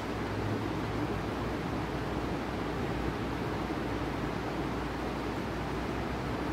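Steady room background noise, an even hiss with a low hum beneath and no distinct sounds standing out.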